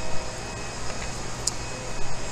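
Steady low hum and hiss of workshop machinery or ventilation, with a brief faint high click about one and a half seconds in.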